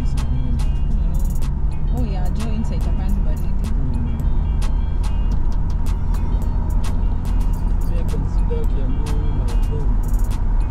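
Steady low road and engine rumble inside a moving car's cabin, with frequent irregular sharp ticks from raindrops hitting the windscreen and faint voices in the background.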